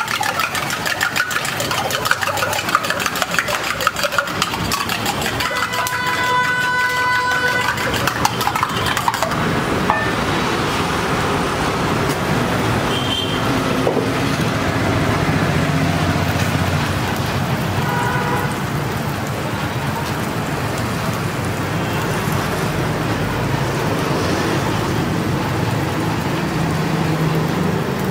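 A fork beats eggs fast in a steel mug, a rapid clatter of metal on metal for about the first nine seconds, with a horn honking about six seconds in. After that, beaten egg sizzles steadily on a hot iron tawa under street traffic noise, with another short horn near the middle.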